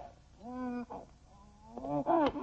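A cartoon animal's vocal cry: one held call lasting about a third of a second, then a shorter, fainter one.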